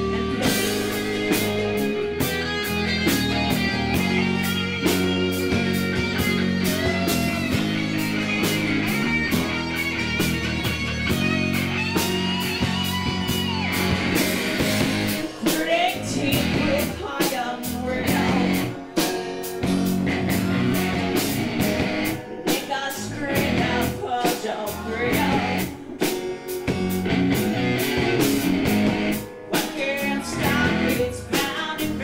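A rock band playing live: a strummed acoustic guitar, an electric guitar and a drum kit keeping a steady beat, with a lead vocal singing over them.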